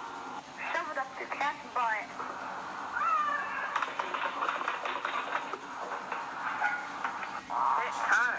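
High-pitched children's voices, squeals and shouts without clear words, played back through tablet speakers.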